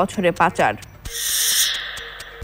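The last words of a headline, then about a second in a TV news graphic transition sound: a bright swoosh over a steady low tone, lasting about a second and a half.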